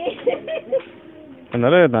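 Speech: a person talking in short bursts, with a loud exclamation near the end. No other distinct sound stands out.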